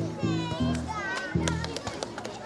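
Music with a pulsing bass line, mixed with the high voices of children at play and a few sharp clicks.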